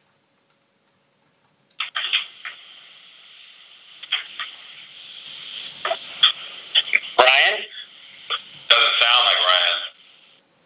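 Conference-call line opening as a caller connects from a computer: a steady hiss on the line with scattered clicks and knocks, then a loud garbled burst about seven seconds in and a longer one near the end.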